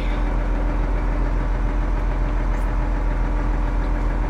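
Tractor engine running steadily, heard from inside the cab as a low, even drone.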